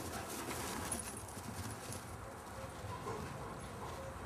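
Paws of a sighthound galloping on grass: a quick run of soft thuds in the first couple of seconds that thins out as the dog runs off.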